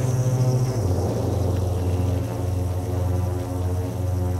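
Techno from a DJ mix: a droning synth bass line with sustained low notes under a dense electronic texture. The bass steps down to a lower note just under a second in.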